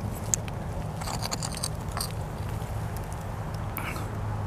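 Gloved hand scraping and crumbling soil and roots around a buried glass bottle and working it free, a scatter of short crunches and scrapes with a sharp click about a third of a second in. A steady low hum runs underneath.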